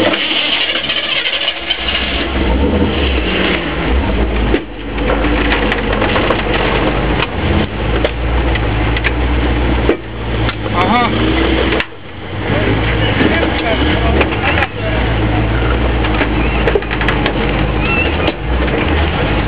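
Jeep Wagoneer engine working under load as the truck crawls up onto a rock, easing off briefly several times before pulling again, with scattered sharp knocks.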